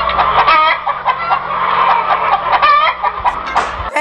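Chickens clucking in a dull, low-fidelity recording with a steady low hum beneath, a series of short repeated calls that cuts off abruptly near the end.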